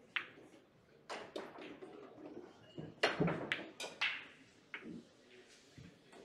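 Pool balls clicking sharply as the rolling cue ball hits an object ball, which is then pocketed. A series of louder knocks and thuds follows about three to four seconds in.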